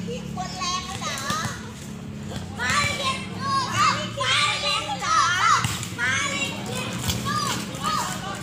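Several high-pitched voices of volleyball players and onlookers calling and shouting over one another, loudest through the middle, over a steady low hum.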